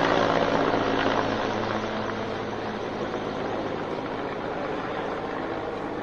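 Helicopter flying overhead, a steady drone that slowly fades as it moves away.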